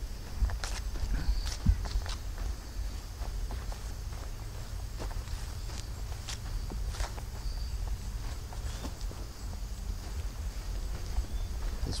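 Footsteps through grass, irregular soft steps, over a steady high insect chirring from crickets and a low rumble.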